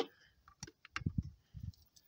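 Small hand-held radio gear and its cable connectors being handled: a sharp click at the very start, a few lighter clicks, then soft low knocks about a second in.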